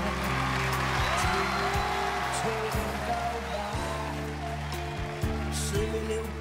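Pop ballad performed live with band backing: long held bass notes under a wavering melody line.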